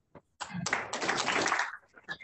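Brief burst of audience applause, starting about half a second in and fading out after about a second and a half.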